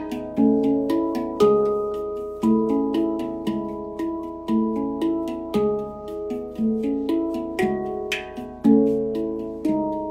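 Handpan played by hand: a flowing, regular pattern of struck steel notes, a few a second, each ringing out and overlapping the next.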